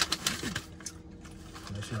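Paper fast-food packaging crinkling and rustling as it is handled, with a quick run of sharp crackles in the first second.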